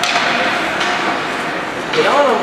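Hockey sticks and puck knocking against pads and ice in a scramble at the net: a sharp crack right at the start and a lighter knock just under a second later, over steady rink crowd noise.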